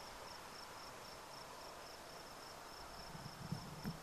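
Faint insect chirping outdoors, a steady series of short high chirps at about four a second. A few faint low sounds come in near the end.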